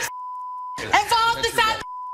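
Television censor bleep: a steady single-pitched tone, about 1 kHz, masking swearing. One bleep lasts under a second at the start, speech follows, and a second bleep begins near the end.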